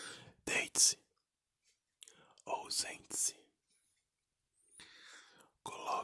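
Close-up whispering in Portuguese, in short phrases with pauses between them, the 's' sounds hissing sharply.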